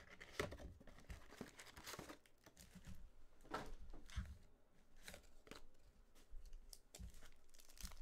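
Faint crinkling, rustling and short tearing of foil trading-card packs and their cardboard hobby box as the box is opened and the packs are pulled out and spread out, with scattered small clicks.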